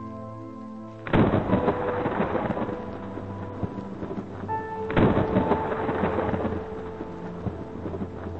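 Two thunderclaps, one about a second in and one about five seconds in, each breaking in suddenly and dying away over a couple of seconds. Slow ambient music with held tones plays under them.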